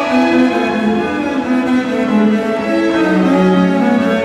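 Solo double bass bowed, accompanied by a small string ensemble of violins and cello, playing a continuous passage of changing notes.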